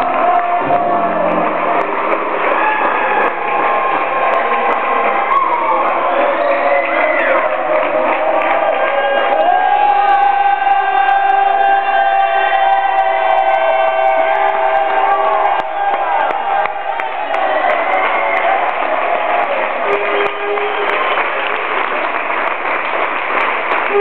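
A crowd of many voices cheering and singing at once over party music, loud throughout.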